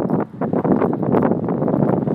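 Loud, steady wind noise buffeting the microphone outdoors, briefly dropping about a quarter second in.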